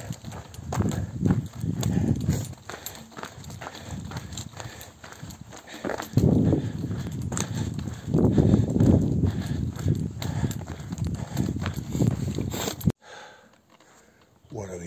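Footsteps crunching on a gravel track, a steady run of short crunches, with bursts of low rumble. The sound cuts off suddenly near the end.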